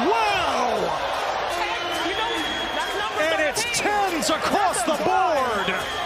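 Arena crowd cheering and yelling in excitement at a dunk, with many overlapping whoops and shouts rising and falling, thickest in the second half.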